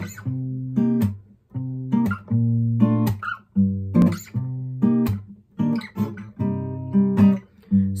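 Acoustic guitar strummed in a rhythmic chord pattern, the song's intro, with short breaks between chord groups. Singing comes in right at the end.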